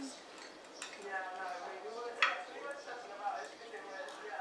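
Quiet, indistinct talk around a dining table, with one sharp click a little over two seconds in.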